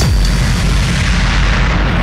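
A loud, rumbling boom of noise with heavy bass in a hardcore electronic dance mix, replacing the pounding kick drum. Its hiss slowly dulls as the treble fades out.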